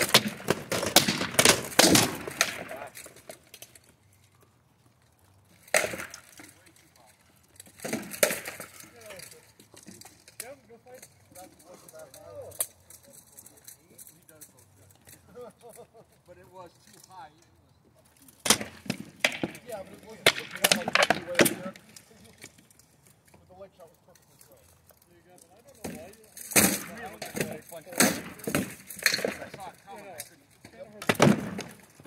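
Rattan swords striking shields, helmets and armor in SCA heavy-weapons combat: several flurries of rapid, sharp blows and clanks, separated by pauses of a few seconds.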